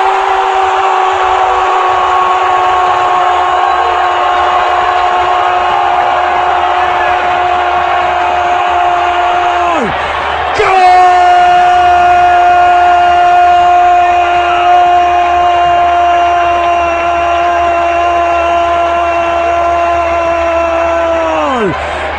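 Radio football commentator's drawn-out goal cry: one 'gooool' held on a single high shouted note for about ten seconds, sliding down as his breath runs out. After a quick breath, a second held note of about ten seconds falls away again near the end.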